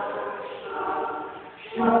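Church choir singing: a phrase dies away about a second and a half in, and the choir comes back in loudly near the end on a sung "Amen".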